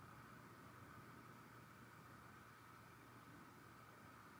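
Near silence: room tone with a faint steady hiss and low hum.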